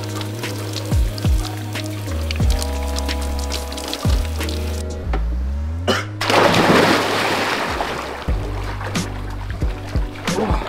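Background music with heavy bass and drum hits. About six seconds in, a person dives into a swimming pool with a loud splash, the loudest sound here, and the water noise fades over the next couple of seconds.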